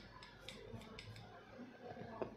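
Faint light clicks, about five in quick succession over the first second or so, made while slides are flipped back on a touchscreen display.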